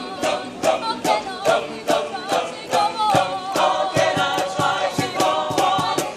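A mixed group of male and female voices singing together as a choir, with no instruments, over a steady beat of sharp strikes about two to three a second.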